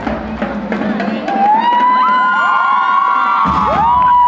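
School marching band: the drums stop about a second in, and high held notes take over, several of them sliding up into pitch and falling away near the end.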